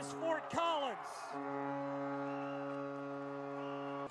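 Ice hockey arena goal horn sounding one long steady blast after a goal, cutting off suddenly near the end.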